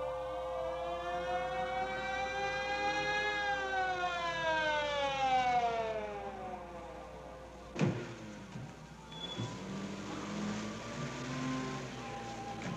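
A wailing tone with many overtones rises for about three seconds and falls for about four over a steady held tone. Both break off about eight seconds in with a single sharp crack, after which only faint low sounds remain.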